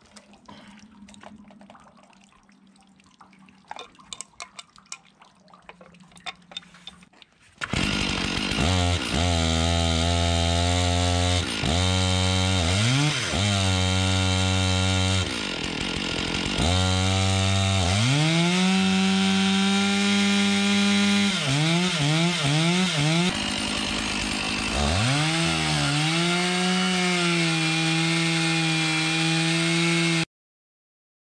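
Two-stroke Stihl chainsaw fitted with a water-feed hose for cutting concrete: after a few light clicks of handling, the engine comes in abruptly about eight seconds in and is revved up and down repeatedly, dropping in pitch several times, with a run of quick throttle blips about two thirds of the way through.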